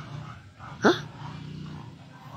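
A single short vocal yelp about a second in, rising sharply in pitch, over a faint steady low hum.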